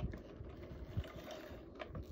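ATG adhesive tape gun run across cardstock, laying down double-sided tape: a steady rasping feed with a few sharp clicks.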